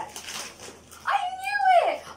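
Wrapping paper torn off a present, then a long, high-pitched squeal of delight from a girl that holds and falls away at the end.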